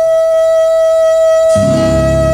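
A tenor saxophone holds one long, steady note in jazz. About a second and a half in, double bass, guitar and a cymbal come in under it as a sustained chord.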